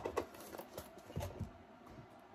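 Light clicks and knocks of small items being handled, taken out of a small leather handbag and set down.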